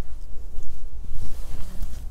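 A person walking across a carpeted floor: soft footsteps over a steady low rumble of a clip-on microphone moving on clothing.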